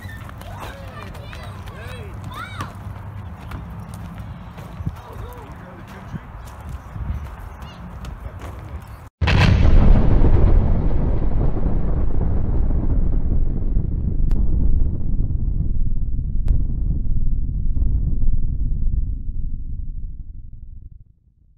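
Explosion sound effect: a sudden loud blast about nine seconds in, followed by a long low rumble that slowly dies away.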